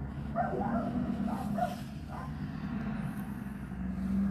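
A recovery truck carrying a car pulls away with its engine running, a steady low rumble. In the first half a dog barks several short times over it.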